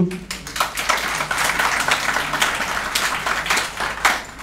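Audience applauding: a few separate claps, then dense clapping from about half a second in that keeps going to the end.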